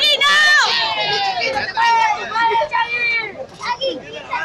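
A crowd of people close by shouting and yelling over one another in high, excited voices, with no clear words.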